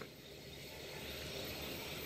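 Faint, steady outdoor background noise without any distinct event, growing slightly louder over the two seconds.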